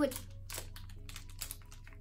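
Plastic snack-bar wrapper crinkling and crackling in the hands as it is opened: a run of quick sharp clicks.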